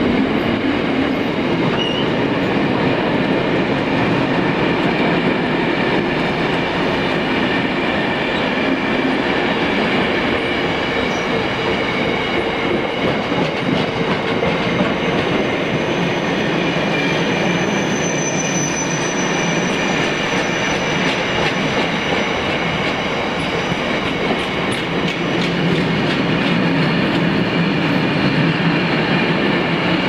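A freight train of bogie tank wagons rolling past at speed behind a Class 60 diesel locomotive. The wheels on the rails make a steady, continuous rumble, with the locomotive's end passing in the first second.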